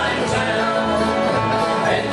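Live bluegrass band playing: banjo, acoustic guitars, upright bass and resonator guitar together at a steady level.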